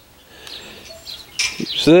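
Tractor PTO clutch parts being handled, with one sharp metal clink about one and a half seconds in. Faint bird chirps can be heard in the background.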